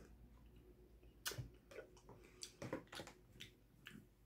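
Soft clicks and wet mouth noises of someone chewing a bite of cheese, starting about a second in and coming irregularly, the first one the loudest.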